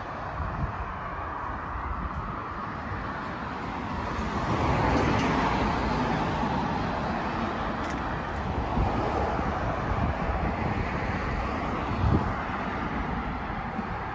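Road traffic on a multi-lane street: a steady rush of passing cars, swelling as one goes by about five seconds in. A brief low bump near the end.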